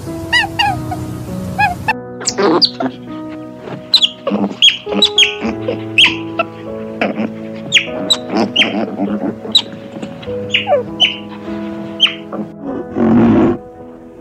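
Otters giving many short, high-pitched chirps that fall sharply in pitch, over steady background piano music. Near the end comes one short, loud, harsh noisy sound.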